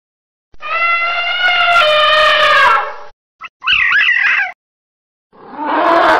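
Recorded animal calls: a long call of about two and a half seconds whose pitch falls slightly, then a shorter call of quick rising-and-falling yelps lasting about a second, and a rougher call starting near the end.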